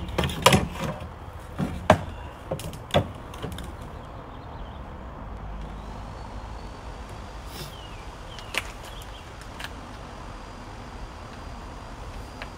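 Hand-tool work on a jet ski's handlebar parts: several sharp clicks and knocks, loudest in the first three seconds, then a few faint clicks over steady low background noise.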